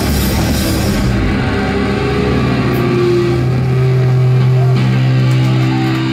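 Live rock band, with electric guitar, bass guitar and drum kit, playing loud. About a second in the drums and cymbals stop, leaving held guitar and bass notes ringing, which change to a new chord near the end.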